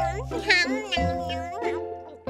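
A high-pitched, cat-like cartoon voice making happy wordless sounds while eating, with a strong swoop in pitch about half a second in, over light children's background music.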